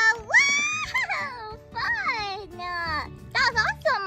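A high-pitched play voice giving drawn-out gliding exclamations, a long rising cry in the first second and then several falling ones, over light background music.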